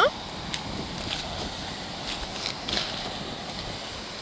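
Plastic toy excavator and stones clicking and scraping on loose rocky gravel as a child digs with it, a few light knocks spread through, over a steady background hiss of wind.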